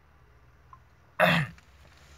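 A man clearing his throat once, a short loud burst a little past halfway, against faint background noise.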